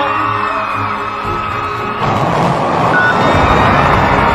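Music with held tones, then about two seconds in a loud rushing roar sets in under it as the rocket's engines ignite for liftoff.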